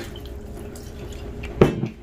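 Rum poured from a plastic bottle, splashing in a steady stream onto diced raw pork in a plastic tub. A single short, louder thud comes near the end.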